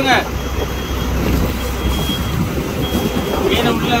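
A fishing boat's engine running steadily at sea, a low hum under wind and water noise. A faint high beep sounds on and off a few times.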